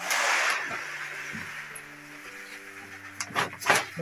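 Rice poured from a plastic cup into a plastic bag: a loud rushing hiss at the start that fades over about half a second, then two sharp rustles near the end. Background music with long held notes plays throughout.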